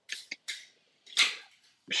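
Aluminium 16 oz beer can being opened: a few short clicks as the tab is worked, then a brief hiss of escaping gas about a second in.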